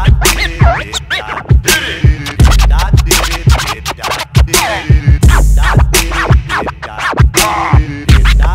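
DJ turntable scratching over a hip-hop beat: quick back-and-forth scratches cut between sharp drum hits, with a deep bass that swells in every couple of seconds.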